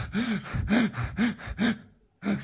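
A person sobbing in a run of short, gasping cries, about three a second, with breath heard between them.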